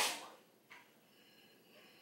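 The end of a woman's spoken word, then near silence with one faint, short rustle about two thirds of a second in, like a plastic bottle being handled.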